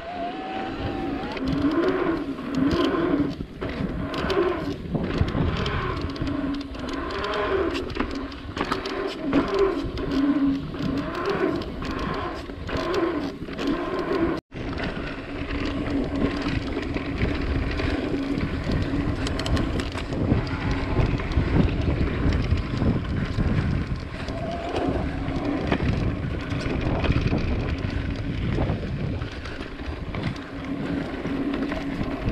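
Mountain bike in motion: a tyre and drivetrain hum that rises and falls in pitch with speed over the pump track's rollers, with frequent knocks and rattles from the bike. After a brief cut about halfway, the hum holds steadier under a rough rumble of the tyres on a dirt trail.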